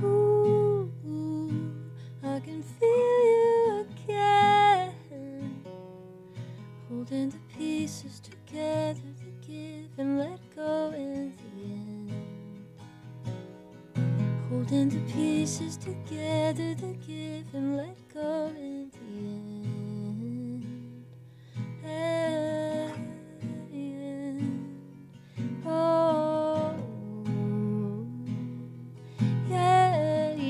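A woman singing live while playing an acoustic guitar: sung phrases come and go over steady guitar accompaniment, with short guitar-only stretches between them.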